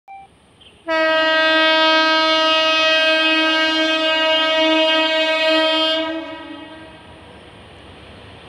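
WAP-7 electric locomotive's horn sounding one long, steady blast of about five seconds, starting about a second in and dying away near the end.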